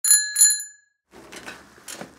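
A bicycle bell rung twice in quick succession, two bright rings that die away within about half a second. This is followed by faint low background noise from about a second in.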